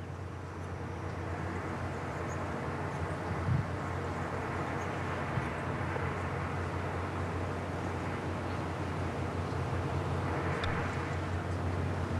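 Steady outdoor ambience from a golf course broadcast while the gallery stays quiet: a low continuous hum under an even background haze. There is one small knock about three and a half seconds in.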